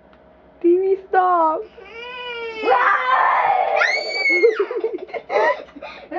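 A young girl's voice making drawn-out wordless vocal sounds in short pieces, with a high held squeal about four seconds in.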